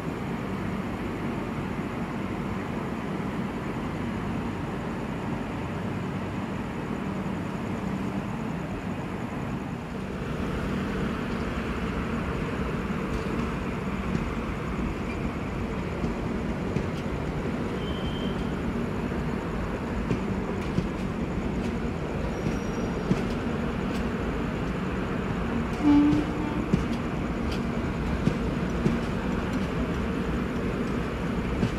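A passenger train pulling out of a station: a steady low rumble of the locomotive and rolling coaches, growing louder about ten seconds in, with a short horn toot near the end.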